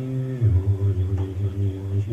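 A low male voice chanting a mantra in long, drawn-out notes on a near-monotone, the pitch stepping down once about half a second in.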